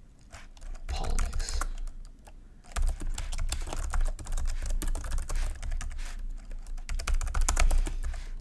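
Typing on a computer keyboard: quick runs of key clicks, sparse in the first two seconds, then nearly continuous from about three seconds in.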